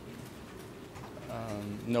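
A man's speech pausing for about a second, with only faint room noise. About a second and a half in, his voice resumes with a held, low hesitation sound.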